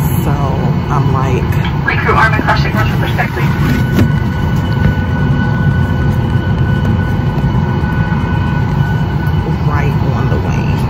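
Airliner cabin noise from a Southwest Boeing 737 on the ground: a steady low rumble from the engines and air system, with a faint steady whine above it.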